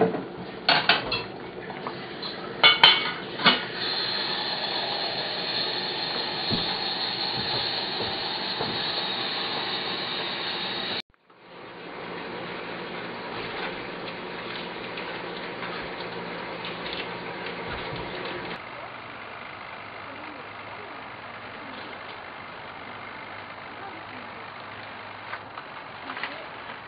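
Metal pots and lids clanking on an electric stovetop, a few sharp clinks in the first seconds, followed by the steady hiss of a pot of water on the boil.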